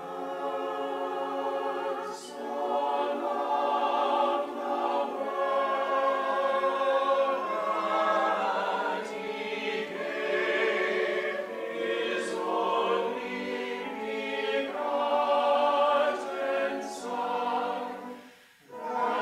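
Mixed-voice church choir singing a slow piece in several parts, with long held chords. The choir comes in together right at the start.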